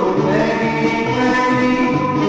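Doo-wop vocal group singing held close-harmony chords over a steady bass line pulsing about twice a second, from a 1959 recording.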